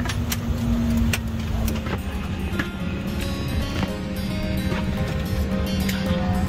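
Airliner cabin at the gate: steady ventilation hum with scattered clicks and knocks from overhead bins and passengers moving about, under soft music.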